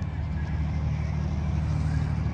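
Vehicle engine idling with a steady low rumble.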